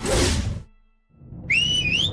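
A loud noisy burst that fades away to a brief hush, then a whistle that starts about halfway through, sliding up in pitch, dipping and rising again, over a background-music bed.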